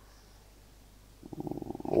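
Room tone for about a second, then a low, creaky, rapidly pulsing vocal hesitation that grows louder and runs straight into speech near the end.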